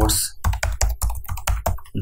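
Typing on a computer keyboard: a quick run of key presses, several a second, as a terminal command is typed out.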